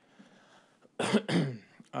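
A man coughs twice, clearing his throat, about a second in after a brief quiet pause.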